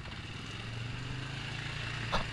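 ATV engine running at a steady low pitch while riding along a rough gravel trail, its note growing slightly louder from about half a second in.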